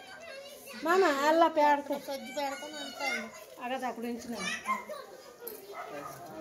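Children's voices talking, loudest about a second in.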